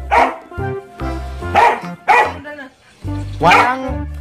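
A dog barking several times in short, loud barks, over background music with a steady low beat.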